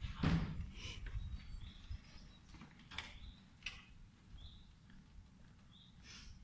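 Faint street ambience: a steady low rumble with a few brief clicks and creaks, the sharpest about a third of a second in, and several short high chirps.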